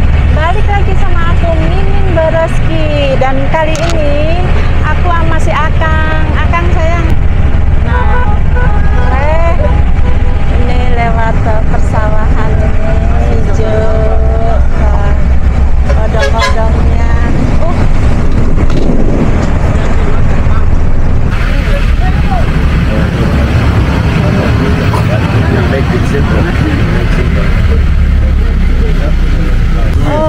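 Engine of an odong-odong, a small open-sided passenger vehicle, running steadily under passengers' voices. From about two-thirds of the way in the voices thin out and a broad hiss of road and wind noise comes up.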